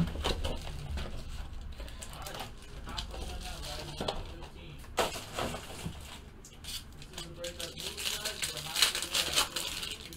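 Hands handling a trading-card box, with a couple of sharp knocks about four and five seconds in, then a foil card-pack wrapper crinkling and tearing open near the end.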